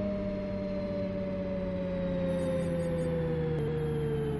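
A sustained drone of several tones together, sliding slowly and steadily down in pitch, like a machine winding down or a held synthesizer chord in a cartoon soundtrack.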